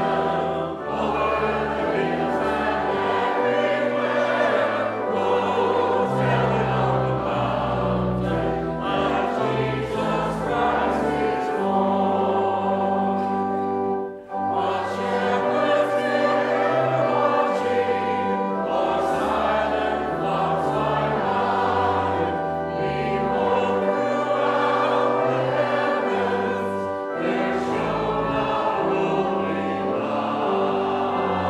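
Choir and congregation singing a Christmas hymn together, accompanied by pipe organ with long held bass notes. The singing breaks off briefly about halfway through, between lines, then carries on.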